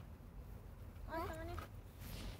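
A single brief high-pitched vocal call about a second in, bending up and then falling away, over faint low background rumble.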